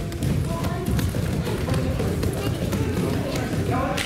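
A group of children running barefoot around judo mats, a dense, continuous patter of footfalls and thuds on the mats.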